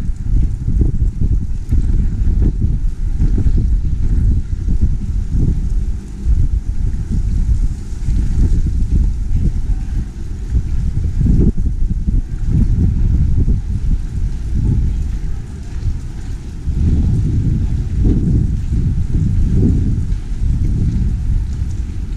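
Wind buffeting the camera microphone: a loud, gusty low rumble that rises and falls every second or so.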